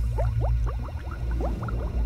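Water bubbling and gurgling in quick, short rising blips, several a second, over a steady low rumble.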